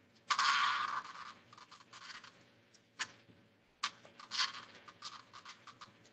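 Periodical cicada's alarm call played back from a video and picked up by the presenter's microphone: a male vibrating his timbal organs while held, giving a buzzing squawk for most of the first second, then short broken buzzes and clicks.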